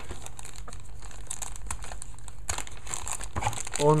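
Clear plastic packaging bag crinkling continuously as hands handle the bagged wired earphones inside it, with many small irregular crackles.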